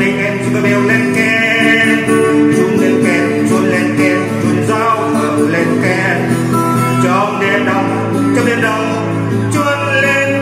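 Music: a man singing a Vietnamese Christmas song in a continuous vocal line over acoustic guitar accompaniment.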